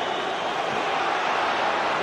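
Football stadium crowd, a steady din of many voices that grows a little louder.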